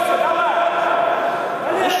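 Men's voices calling out over the murmur of a crowd in a large hall, with a steady tone underneath.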